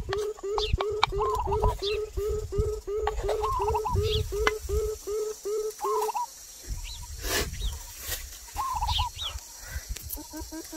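Birds calling: one repeats a short hooting note about three times a second for the first six seconds, while others warble and chirp over it. Dull low knocks, fitting a wooden pestle working in a clay mortar, run underneath.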